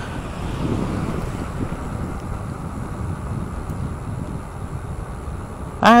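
Wind rushing over the microphone with steady tyre and road rumble from an e-bike riding along a tarmac lane.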